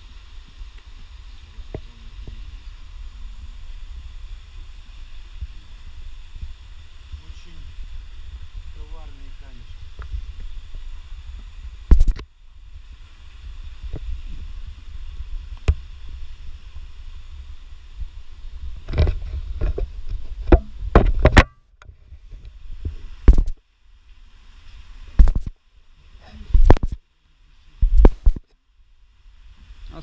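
Low rumble of handling and wind noise on a handheld camera's microphone while the camera is carried up over rock. About twelve seconds in comes one loud bump, then a run of loud knocks and bumps in the second half, the sound cutting out abruptly after several of them.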